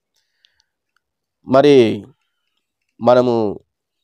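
Speech only: a man preaching in Telugu, two short phrases with dead silence before and between them.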